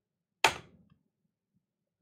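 A single sharp keystroke on a computer keyboard about half a second in, a hard tap of the Enter key that submits the typed entry.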